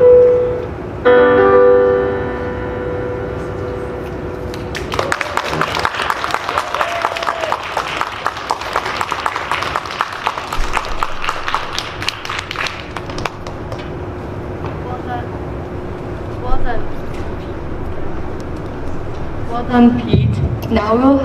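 Piano playing the last notes of a piece: a final chord about a second in rings out and dies away. Then an audience applauds for about eight seconds, and the clapping fades away.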